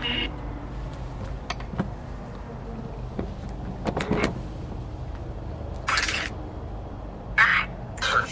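Necrophonic spirit-box app playing through a phone's small speaker: scattered clicks over a steady low drone, then short bursts of static about six and seven and a half seconds in.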